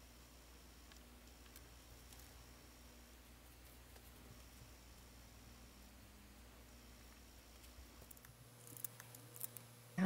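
Near silence: a faint steady room hum, with a few soft clicks near the end.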